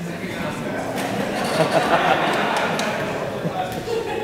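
Indistinct chatter of many people echoing in a large hall, growing louder around the middle.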